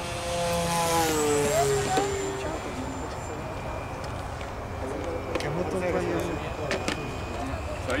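Electric motor and propeller of a radio-controlled model airplane flying past overhead: a buzzing whine whose pitch drops about two seconds in, then fades to a fainter drone.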